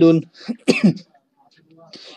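A man's voice sounding out Arabic letter syllables in a Qur'an reading lesson, stopping about a second in, with only faint sounds after.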